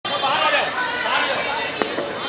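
Several people talking at once, their voices overlapping into chatter, with a brief click near the end.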